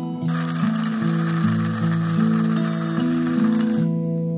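Kalita electric coffee mill running and grinding roasted coffee beans, a steady whirring grind that stops just before the end.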